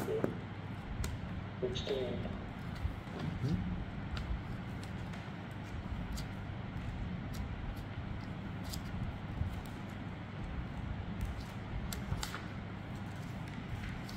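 Steady low room hum with scattered light clicks and rustles of handling, as of pages or a device being handled while a passage is looked up. A brief faint murmur of voice comes in the first couple of seconds.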